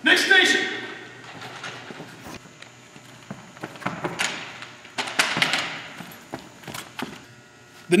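Scattered, irregular thumps and knocks echoing in a large gym, over faint background voices, with a brief voice-like shout or laugh right at the start.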